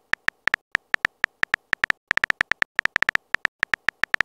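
Simulated phone-keyboard typing clicks, one short tick per letter, tapping at an uneven pace of about seven or eight a second as a text message is typed out.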